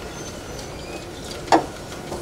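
Room tone of a restaurant dining room in a lull, with one short sound about one and a half seconds in.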